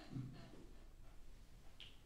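A quiet room with a soft, low thump just after the start and a short, sharp click near the end, as a person settles into a chair.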